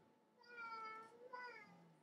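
A faint, high-pitched voice drawn out in a slightly bending call about half a second in, followed by a second, shorter call near the end.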